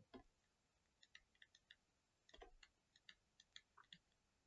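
Near silence with faint, irregular clicks and taps of a stylus on a pen tablet as a word is handwritten, about a dozen light strokes spread over the few seconds.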